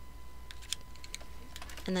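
A few light, scattered clicks from a hot glue gun being squeezed and handled as spots of glue are put on lace ribbon.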